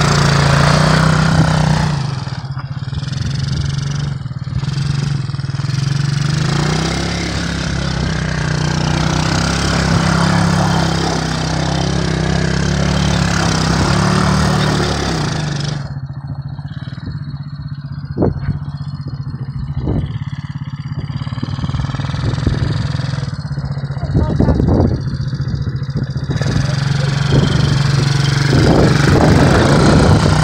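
Small 125cc ATV engine running and being ridden, its pitch rising and falling as the throttle is worked.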